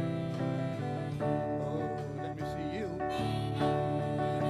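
Live band playing: electric guitar chords over bass guitar and drums, with cymbal hits.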